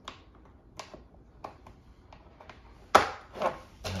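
Plastic toy train track pieces tapping and clicking as they are fitted together, then a louder clatter of loose track pieces being rummaged about three seconds in.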